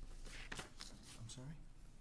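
Sheets of paper rustling as they are handled and shuffled at a table, with faint low talk about halfway through.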